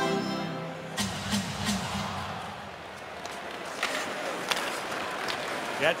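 Arena organ music plays over the faceoff and cuts off about a second in. After that the crowd makes a steady noise, with a few sharp clacks of sticks and puck on the ice.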